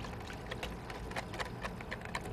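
A wire whisk beating a vinaigrette in a plastic mixing bowl: quick, irregular ticks and taps of the whisk against the bowl.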